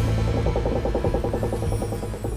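Title theme music: a low drone under a fast fluttering figure of about a dozen pulses a second, which stops near the end.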